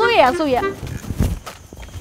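A high voice speaks for well under a second, then a few soft footsteps.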